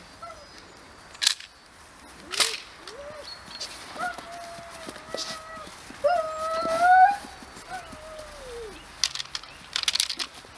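Dobermann puppy tugging on a rag toy and giving several high-pitched, drawn-out calls, the loudest about six seconds in and the last one falling in pitch. A few sharp clicks come near the start and again near the end.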